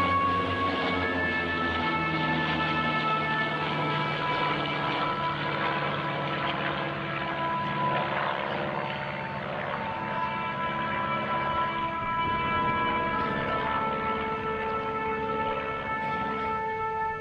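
Light propeller aircraft passing overhead, the engine noise swelling to its loudest about halfway through, over music with long held notes.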